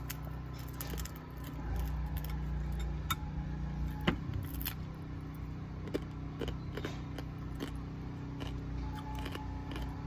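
A metal fork clicking and clinking against a glass bowl during eating, with a few scattered sharp clinks, the loudest about four seconds in. Under it runs a steady low hum.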